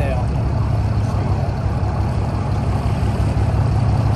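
Fishing boat's engine running steadily at low trolling speed, a constant low rumble with the hiss of wind and water over it.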